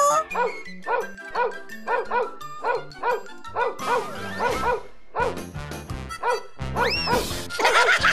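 Cartoon dog barking over and over in quick succession, about three or four barks a second, over background music, with a brief rising-and-falling glide about seven seconds in.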